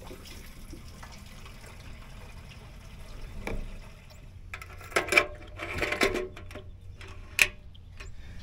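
Gasoline pouring steadily from a plastic gas can into the fuel tank of a Honda GX390 trash-pump engine. In the second half come several knocks and clatters as the can is lifted away and the filler cap is handled.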